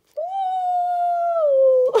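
A dog howling: one long, steady howl that slides lower in pitch near the end.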